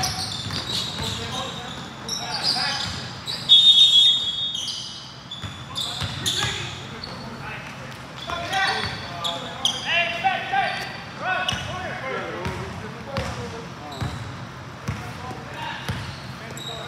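Game sounds on an indoor hardwood basketball court: players' voices calling out in the large gym, the ball bouncing and shoes on the floor, with a loud short referee's whistle blast about three and a half seconds in.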